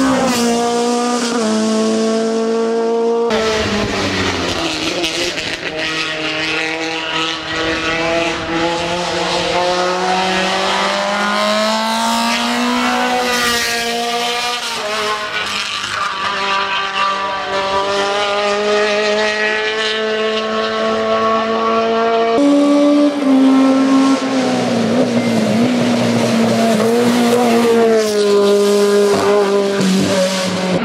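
Peugeot 306 Maxi rally car's four-cylinder engine at full throttle on a hill-climb run. The pitch climbs steadily through each gear and drops back at every upshift.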